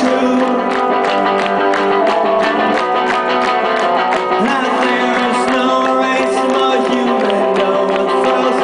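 Live rock band playing loud: electric guitars and keyboard with regular cymbal hits, without vocals. The sound is thin, with almost no low bass.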